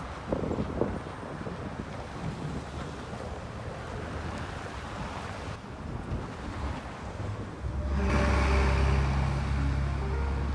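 Winter street ambience: wind buffeting the microphone over the noise of passing car traffic, with a few knocks in the first second. About eight seconds in, background music comes in with a steady deep bass note and held notes above it.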